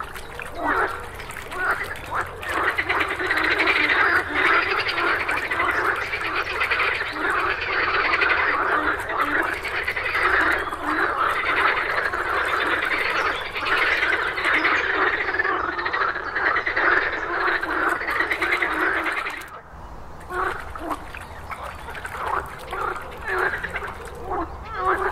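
A chorus of water frogs croaking, their paired white vocal sacs inflated at the sides of the head: a dense run of fast, pulsed croaks that breaks off suddenly a few seconds before the end, then picks up again in thinner bursts.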